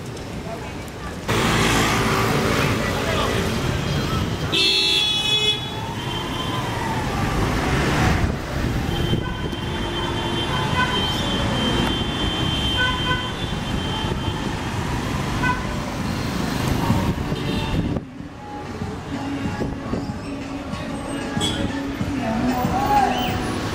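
Busy city street: traffic running and people talking. A vehicle horn sounds once for about a second, around five seconds in.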